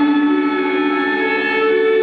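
Live music of long, sustained electric guitar notes ringing over one another, the pitches holding steady with a slight slow bend.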